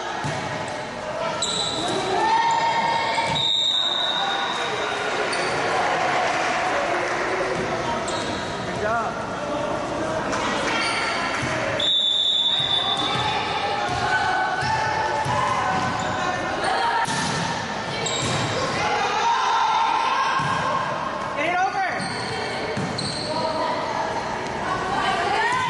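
Indoor volleyball game in a large gym: players' voices calling and chattering, with thuds of the ball being hit and bounced, echoing off the hall.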